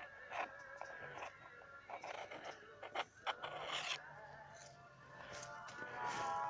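Faint rustling of shrub leaves and twigs brushing past, with a few light clicks and steps, over faint steady tones like distant music.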